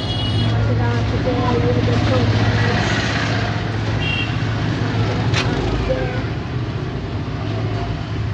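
A steady low hum under a dense background noise, with faint, indistinct voices and a single sharp click about five seconds in.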